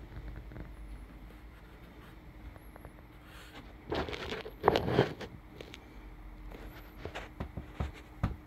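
Rustling and handling noise as the person filming moves the phone and shifts about, loudest about halfway through, followed by a few light clicks and knocks near the end.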